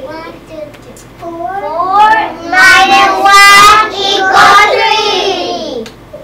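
Young children's voices calling out together in a drawn-out, sing-song way, loud and high-pitched, starting about a second in and running until shortly before the end.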